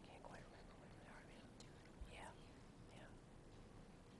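Near silence: faint, off-microphone voices murmuring, with a soft bump about two seconds in.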